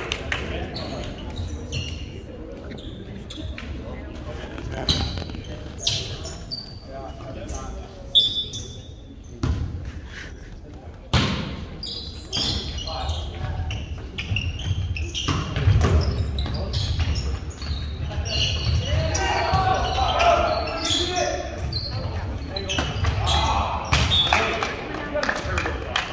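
Volleyball rally in a gymnasium: sharp, scattered slaps of the ball being passed and hit, ringing off the hall, with players and spectators calling out, busiest in the last few seconds.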